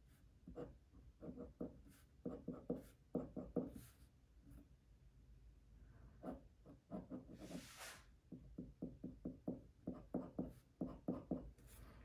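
Glass dip pen scratching faintly on paper in clusters of quick, short strokes as letters and bond lines are drawn, with one longer stroke about two-thirds of the way through.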